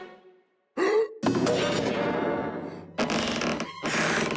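Cartoon bear's breath sound effects: a short rising gasp about a second in, then long breathy blows as he inflates a balloon, with music underneath.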